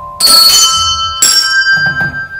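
Two loud, bright bell-like chime strikes about a second apart, each ringing on with many high overtones and fading slowly. It sounds like a closing accent of a news-show intro jingle.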